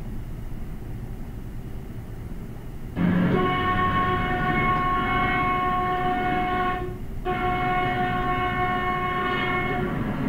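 Car horn sounding, heard from inside the moving car over its low running noise. The horn comes in about three seconds in as one steady, unchanging pitch, breaks off briefly near seven seconds, then sounds again. Its pitch stays the same because the listener moves with the horn, so there is no Doppler shift.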